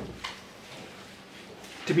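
Pages of a Bible being turned and handled on a lectern: a short rustle and soft knock right at the start, a faint second rustle just after, then quiet room tone until a man starts speaking near the end.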